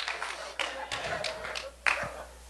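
A few light taps, with one sharper knock just before the end.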